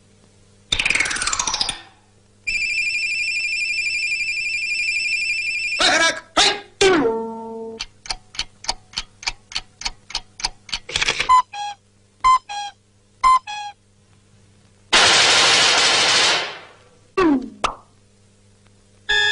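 Animated-film sound effects in sequence: a falling whistle, a steady high ringing tone for about three seconds, a few short falling blips, a quick run of clicks at about four a second, some short beeps, a loud burst of hiss that fades, and a last falling whistle near the end.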